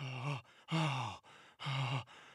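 A cartoon dog's voice retching with strained, voiced heaves, three in two seconds.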